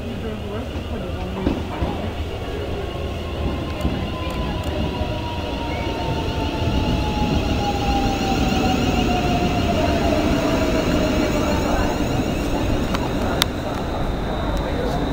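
A London Midland electric multiple unit pulling into the platform and slowing, its rumble growing louder as it passes close, with a whine that falls steadily in pitch as it brakes. A sharp click near the end.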